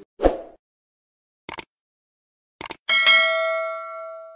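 Sound effects of a subscribe-button animation: a short pop, two quick clicks about a second apart, then a notification-bell ding that rings and slowly fades.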